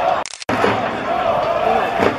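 Football crowd of supporters chanting in unison, many voices holding a wavering sung line. It cuts out briefly about a third of a second in, then resumes.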